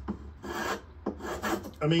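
Small cheap hand plane shaving a block of stud timber in two push strokes, a rasping scrape of the blade on the wood. Its blade, held by a loose wooden wedge, has slipped further out of the plane.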